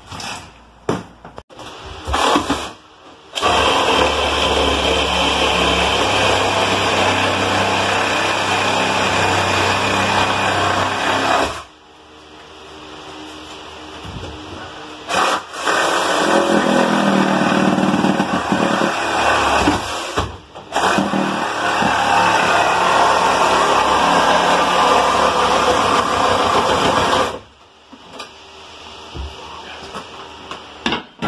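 Handheld corded power saw cutting into the plywood ceiling overhead, running loud and steady in three long runs, with short blips of the trigger at the start.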